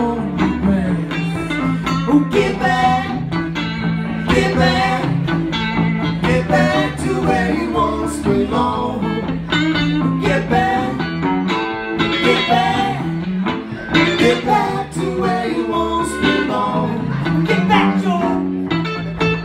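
Live band music: a woman singing over electric guitars played through amplifiers, with a steady low line under the melody.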